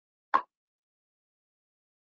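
A single short, sharp click about a third of a second in.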